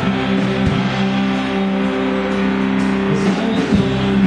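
Live rock band playing: electric guitars hold long sustained notes over the bass, with a few drum hits.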